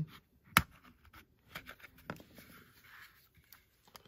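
Plastic flashlight housing being pried open with a plastic pry tool: a sharp snap of a releasing clip about half a second in, then a few smaller clicks and light scraping of plastic on plastic.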